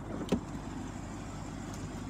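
Steady outdoor background noise with one short, sharp click about a third of a second in.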